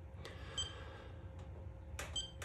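A single short electronic beep from the iCharger X6 as one of its buttons is pressed, about half a second in, with a couple of faint clicks.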